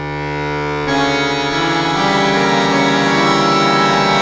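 Pigini chromatic button accordion playing: a held chord swells in from silence, then the chord fills out about a second in, with a quick pulsing figure in the bass underneath.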